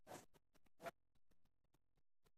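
Near silence with faint handling noises at a small gas stove: two short scrapes about a quarter second and just under a second in, among a few soft ticks.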